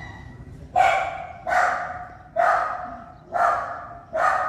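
A dog barking four times, about a second apart, each bark loud and echoing briefly.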